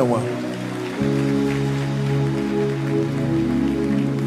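Soft background music of sustained, held chords that swell in fuller about a second in.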